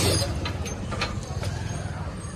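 Mahindra 265 DI tractor's three-cylinder diesel engine idling steadily, with a sharp metal click right at the start and a few lighter clicks and knocks as a metal bar is worked into the tractor's upright frame.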